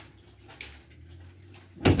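Quiet indoor room tone with a faint steady low hum. A man's voice starts near the end.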